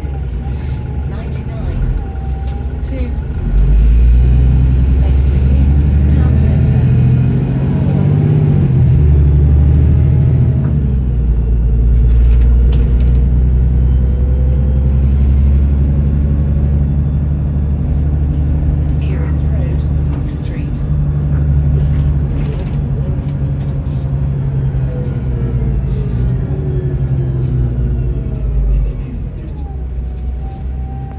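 Double-decker bus engine and automatic gearbox heard from inside the bus. From about four seconds in it pulls hard with a deep rumble, and a whine rises and falls as the gears change. It eases off near the end. The bus is driven hard on kickdown.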